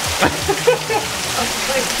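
Several people laughing in short broken bursts over a steady hiss.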